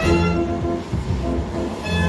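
Merry-go-round organ music playing in a steady run of notes, with a brief hiss of noise rising under it in the middle.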